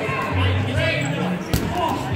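An 8.5-inch rubber dodgeball hits the wooden gym floor once with a sharp smack about one and a half seconds in.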